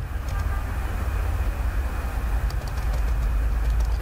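Steady low rumbling background noise with a few faint clicks.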